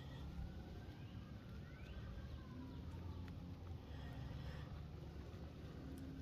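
Faint distant siren, its pitch slowly rising and falling, over a low steady rumble, with a few faint ticks.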